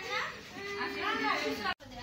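Indistinct talk with a young child's voice, cut off briefly near the end.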